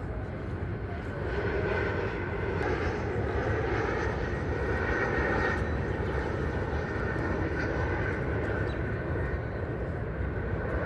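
An aircraft passing overhead: a steady rushing noise that swells about a second in and stays loud.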